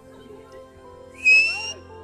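A single short, high whistle, rising slightly in pitch, sounds about a second in over a faint crowd background.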